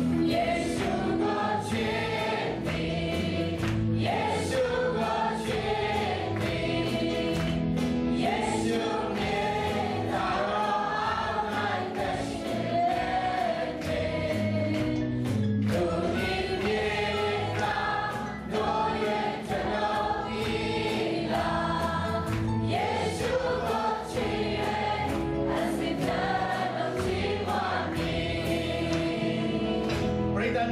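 Amplified Christian worship song: a man and women sing lead on microphones with many voices singing along, over band backing with a steady beat.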